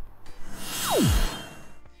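Edited transition sound effect: a whoosh that swells and fades, with a tone diving steeply down in pitch in the middle, over the tail of background music.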